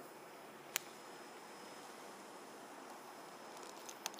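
Faint steady background hiss with one sharp click about a second in and a few faint ticks near the end.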